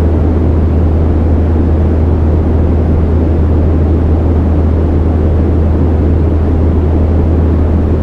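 A loud, steady low drone: a deep hum with a rough rumble over it, and no beat or rhythm.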